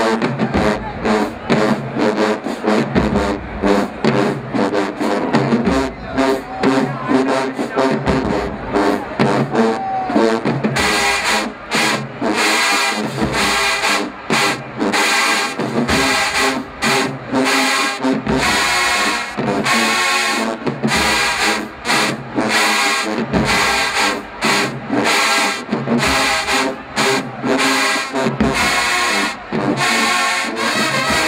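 A college marching band playing in the stands, brass over a driving drum beat. About eleven seconds in the full band comes in louder and brighter.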